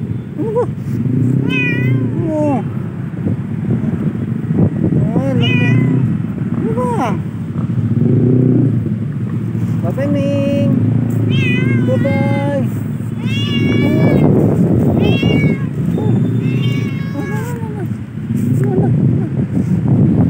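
A black-and-white domestic cat meowing repeatedly, about ten short meows with rising-and-falling pitch, coming closer together in the second half, over a steady low rumble.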